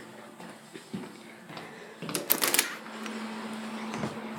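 Rustling and clicking handling noise of a handheld camera being carried, with a quick cluster of sharp clicks and rustles about halfway through, followed by a faint steady hum.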